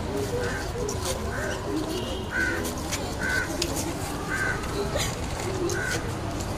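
A bird calling over and over, one short call about once a second, over the low murmur of many people's voices.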